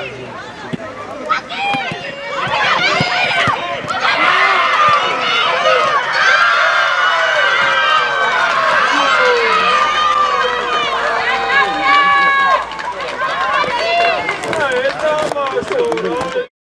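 Many high-pitched young voices shouting and cheering together over a goal, building about four seconds in into a loud, sustained din with long held shouts.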